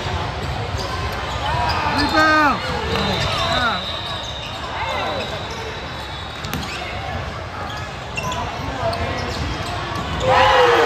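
Basketball game in a large echoing hall: a ball bouncing on the hardwood court amid players' and spectators' voices calling out, the loudest calls about two seconds in.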